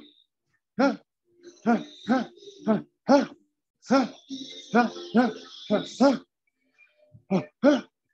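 A man's short, sharp vocal grunts, about a dozen in quick uneven succession, each rising and falling quickly in pitch, given out with his punches while shadowboxing. There is a brief pause near the end.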